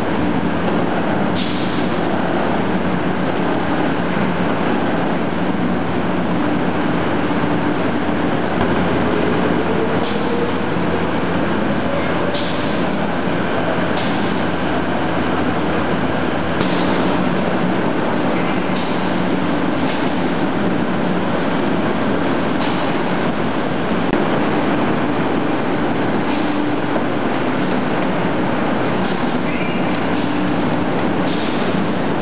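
Hide-processing machinery running steadily in a loud factory, a continuous din with a low hum and short hissing bursts every two to three seconds.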